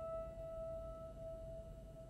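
Grand piano: a single high note, struck just before, rings on and slowly fades.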